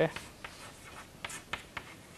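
Chalk writing on a blackboard: a few short scratching strokes as a word is written.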